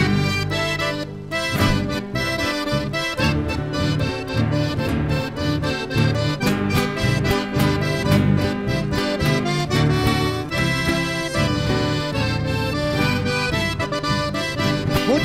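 Chamamé group playing an instrumental passage: an accordion carries the melody over acoustic guitars and a bass guitar, with a steady rhythmic bass line.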